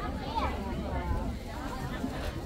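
People talking indistinctly nearby, over a steady low rumble.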